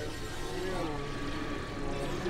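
Experimental synthesizer noise music: a layered drone with a pitched tone that wavers and bends up and down, over a dense hiss and rumble.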